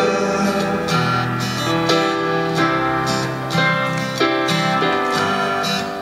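Acoustic guitar strummed along with a keyboard playing sustained chords, an instrumental gap in a slow song with no singing.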